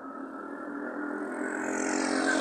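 A motor vehicle's engine hum, steady in pitch and growing steadily louder.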